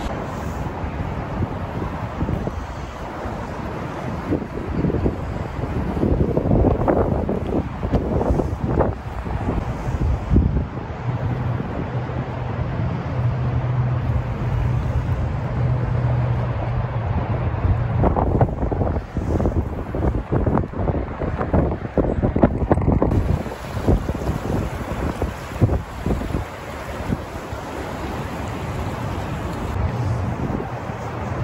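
Wind buffeting the microphone in uneven gusts, over the rush of river water. A low steady hum joins in for several seconds in the middle.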